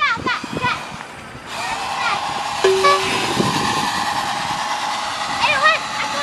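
A steady horn-like tone starts about a second and a half in and holds to the end, with a brief lower tone in the middle, and children's voices at the start and near the end.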